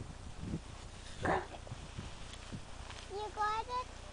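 A few soft crunching steps in deep snow, then near the end a toddler's short, high-pitched, wavering vocal sounds.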